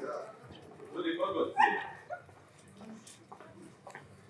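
A dog barking about a second in, among people's voices.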